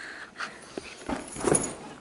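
A man dropping onto a fabric couch, with a soft thump about a second in, followed by a short wordless vocal sound like a grunt.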